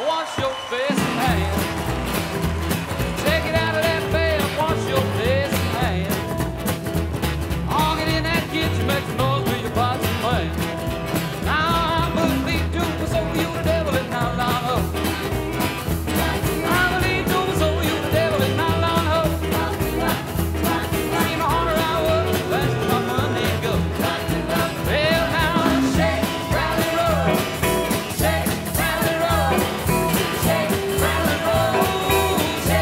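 1950s-style rock and roll band playing: acoustic guitar, drums and piano with a steady beat, and a male voice singing over it.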